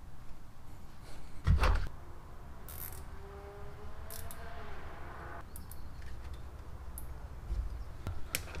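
Quiet handling sounds as a tight rubber vacuum cap is squeezed onto a hose fitting in the engine bay. There is a thump about a second and a half in, a few light clicks, and a faint drawn-out creak in the middle.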